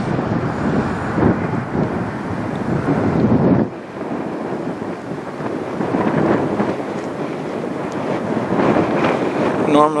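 Wind blowing on the camera microphone in gusts, a loud noise without any tone that drops off briefly about four seconds in.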